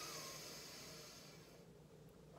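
A person's slow breath drawn in, a soft hiss that fades out about a second and a half in.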